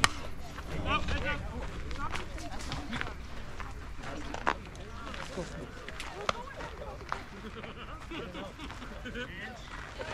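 A single sharp crack of a bat hitting a softball, followed by a hubbub of voices calling out in the background, with a few more sharp clicks later on.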